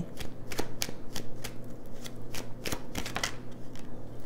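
Tarot cards being shuffled by hand: an irregular run of quick card snaps and flicks, several a second.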